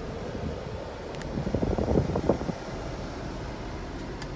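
Steady low hum inside a 2015 Jeep Grand Cherokee's cabin. For about a second in the middle there is a cluster of irregular rustling and knocking noise from handling near the microphone.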